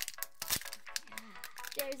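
Kinder Joy egg wrapper crinkling and crackling as it is peeled off and the egg is pulled open by hand: a quick run of small crackles.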